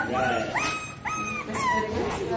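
A Shih Tzu puppy about 45 days old whining: two long high-pitched whines of about half a second each, then a shorter falling one near the end.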